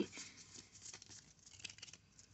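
Faint crinkling and small irregular clicks of a foil Pokémon booster pack and its trading cards being handled, dying away toward the end.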